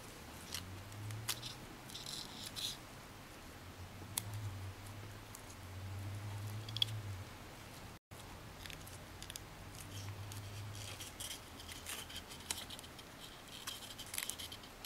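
Faint crinkling and rustling of a folded paper model being pressed and creased by hand, with scattered small crackles.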